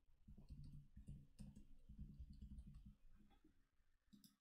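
Faint computer keyboard typing: a run of soft, irregular keystrokes for about three seconds as a password is entered.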